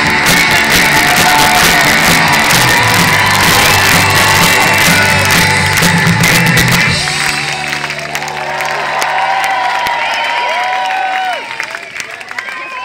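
Live rock band playing loudly with guitars until the song ends about seven seconds in. The crowd then cheers, shouts and whoops.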